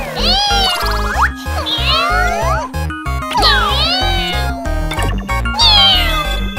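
Cartoon kittens' angry meows and yowls as sound effects, several gliding cat calls in a row, over bouncy children's game music with a steady bass beat.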